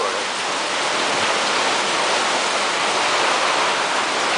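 Heavy downpour: a steady, dense hiss of rain, heard from under a sailboat's canvas cockpit cover.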